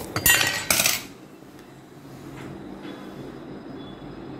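Hard objects clattering as they are handled on a tabletop: two sharp knocks in quick succession in the first second, then a few faint handling clicks.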